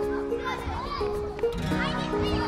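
Children shouting and calling out as they play a chase game, over background music of steady held notes that step from one pitch to the next.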